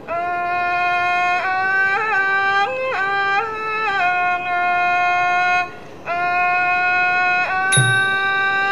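Solo melodic line of a Thai classical song: long, steadily held notes that step up and down between pitches with small ornamental turns. The line breaks off briefly about six seconds in and then resumes.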